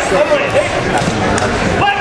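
Voices of spectators and coaches calling out, echoing in a gymnasium, with a few dull thumps underneath.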